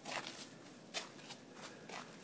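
Faint, irregular clicks and rustling from a hand-held phone being shifted in the hand against a sheepskin coat.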